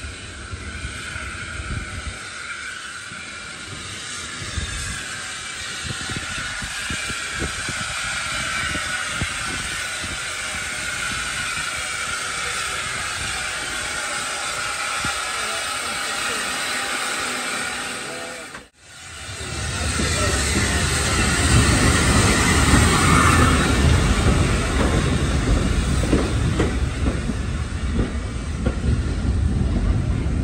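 SECR O1 class 0-6-0 steam locomotive approaching slowly with a steady hiss of steam, growing louder as it comes alongside. After a sudden cut, passenger coaches roll past close by with a louder low rumble and clatter of wheels on the rails.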